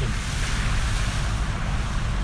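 Water spray from the tyres of a Ford Ranger Wildtrak pickup hitting its side as it drives through a ford: a loud, steady hiss over the truck's low rumble.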